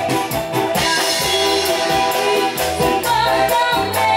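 Live dangdut koplo band playing through a stage sound system: singing over drums, percussion and guitar, with a steady beat.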